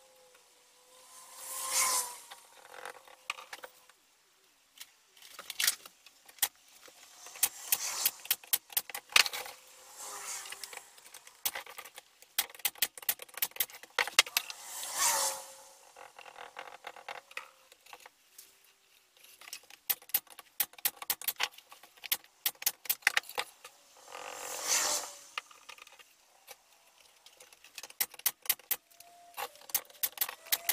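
Workbench assembly of a plywood box: many sharp clicks and knocks of wood pieces and tools being handled, with four hissing, spluttering squirts from a squeezed plastic glue bottle.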